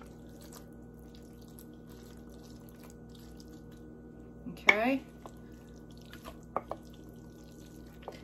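Thick, creamy macaroni scraped out of a bowl with a wooden spoon and dropping into glass baking dishes: faint soft wet plops and light taps, with a steady low hum underneath.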